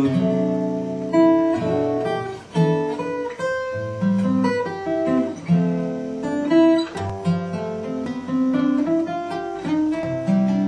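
Acoustic guitar in DADGAD tuning played with the fingers: a flowing passage of plucked notes and chords, each left ringing over the next.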